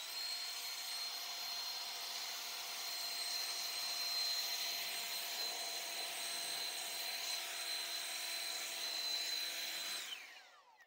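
AOETREE 20-volt cordless electric leaf blower running steadily at full speed, a high whine over rushing air, blowing gravel and leaf debris off an outdoor mat.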